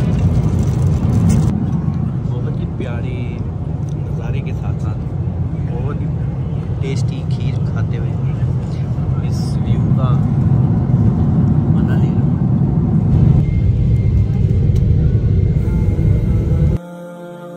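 Steady low rumble of a jet airliner's cabin in flight, with people talking in the background and a few light clicks of plastic and cutlery.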